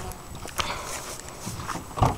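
Footsteps through long grass, with a couple of sharper ticks, one about a third of the way in and one near the end.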